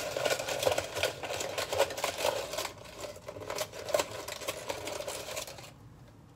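A hand rummaging through folded paper number slips in a plastic party cup: a continuous crinkling rustle that stops shortly before the end.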